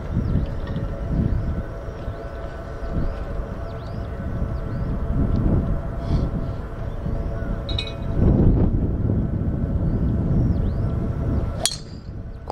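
Wind gusting on the microphone outdoors, with faint high chirps. Near the end comes a single sharp crack of a golf driver striking the ball off the tee.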